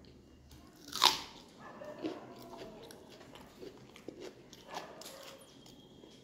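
Biting into a whole raw red onion: one loud crunch about a second in, then chewing with smaller crunches.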